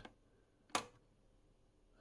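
A single short click about a second in as a front-panel function push-button on a Keithley 197A bench multimeter is pressed. The rest is near silence.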